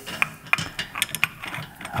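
Long threaded steel bolt being fed through a steel toilet frame into a plastic wall bracket, its threads clicking and ticking irregularly against the metal and the bracket's clip.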